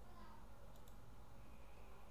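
A computer mouse button clicking faintly: a quick press and release about three-quarters of a second in. A low steady background hum runs under it.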